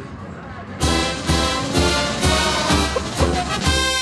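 Brass band music with a steady bass beat about twice a second, starting abruptly about a second in.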